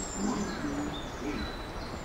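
Station platform ambience: people's voices and a low rumble from an approaching JR West 223 series electric train, with a few faint, short high chirps.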